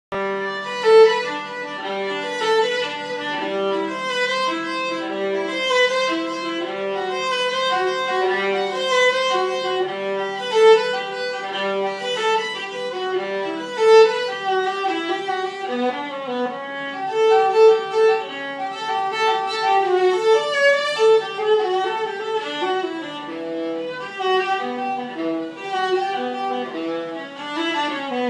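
Stradivarius-model viola played with the bow, a solo melody of changing notes. For roughly the first twelve seconds a steady low note is held under the melody, and near the end the line runs down into the low register.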